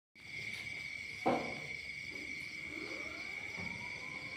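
Steady, high-pitched trill of crickets, with one sharp knock about a second in and a faint rising whine in the second half.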